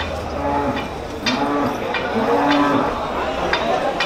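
A bovine lowing in three short calls, each rising and falling in pitch, with a few sharp knocks between them.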